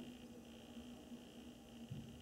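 Near silence: faint room tone with a steady low hum and hiss, and one soft low thump near the end.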